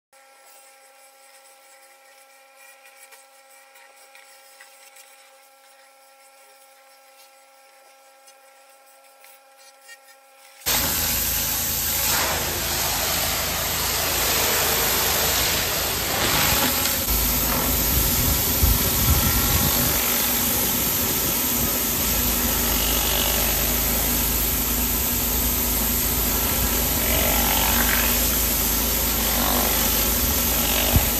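Engine-driven pressure washer running with a rotary surface cleaner spraying on paving slabs: a loud, steady hiss over engine noise. It cuts in suddenly about a third of the way in. Before that there are only faint steady tones. The engine is running fine again after being topped up with oil.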